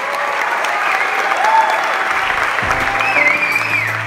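Theatre audience applauding at the end of an acceptance speech. Music starts underneath the applause about two and a half seconds in, holding a steady low bass note.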